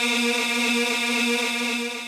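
A man's voice holding one long, steady note at the close of a chanted Quran recitation, amplified through a microphone, fading near the end.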